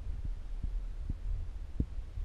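Wind buffeting the camera's microphone: a continuous low rumble with about five soft, irregular thumps.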